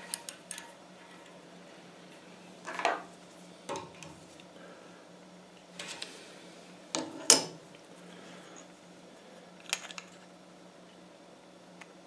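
Wire being bent and straightened with pliers against a steel jig block in a vise: scattered metal clinks and taps, the sharpest about seven seconds in, over a steady low hum.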